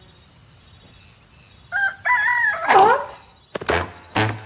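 A rooster-like morning crow in a few held notes, ending in a long note that swoops down, about two seconds in, over a quiet background. A few sharp taps follow near the end.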